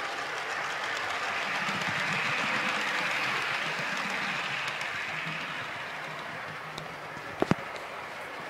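Bachmann Class 350 model electric train running past on the layout's track. Its motor and wheels rise to their loudest about midway, then fade away. Two sharp clicks come close together near the end.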